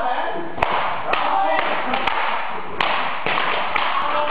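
Cloth jiu-jitsu belts being lashed against a person's body and gi, five sharp cracks spaced roughly a second apart, over a crowd chattering and laughing.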